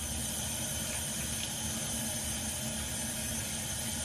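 Water running steadily from a bathroom tap into the sink.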